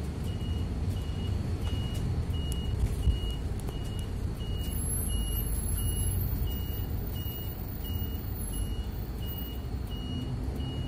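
Inside a midibus cab: the engine and road noise rumble low and steady while a short, high electronic beep repeats evenly, about three beeps every two seconds. A brief knock is heard about three seconds in.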